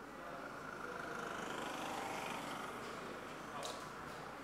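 Faint, steady background noise: a low hiss and murmur of location ambience with no distinct event.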